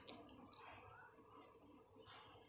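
A few faint, sharp clicks in the first half second, then near-silent room tone.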